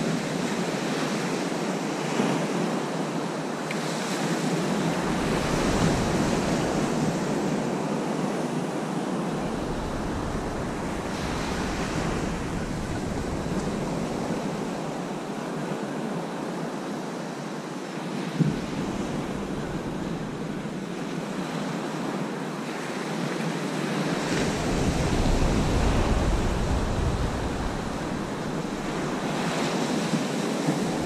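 Small sea waves breaking and washing up a sandy beach, a steady surf hiss, with gusts of wind buffeting the microphone every few seconds. One short sharp click about two-thirds of the way through.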